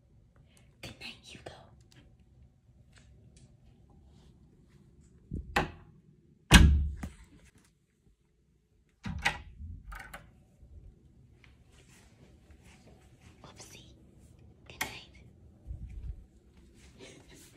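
An interior door being handled: clicks from the lever handle and latch, and a few sharp thumps, the loudest and heaviest about six and a half seconds in, with smaller ones around nine seconds and near the end.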